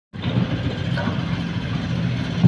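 Diesel engine of a hydraulic excavator running steadily, a low even drone.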